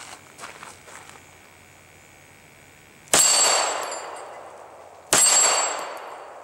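Two pistol shots about two seconds apart, the first about three seconds in, each ringing out and fading slowly. A few faint clicks come in the first second before them.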